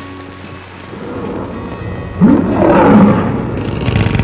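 A loud roar with a wavering pitch breaks in about two seconds in and carries on. Before it there is only hissy old-soundtrack noise.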